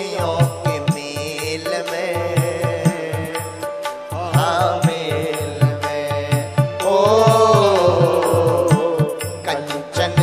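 A man singing a Hindi devotional bhajan into a microphone, with long gliding held notes, over drums keeping a steady beat and sustained instrumental accompaniment.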